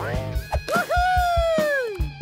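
Cartoon soundtrack: background music with a steady beat, and a long held tone that slides down in pitch near the end.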